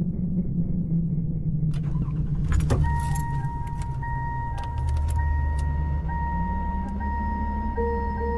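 Car sounds: a rapidly repeating warning chime for about the first second and a half, then keys jangling and several clicks between two and three seconds in. After that comes the car's low steady rumble with a steady high electronic tone over it.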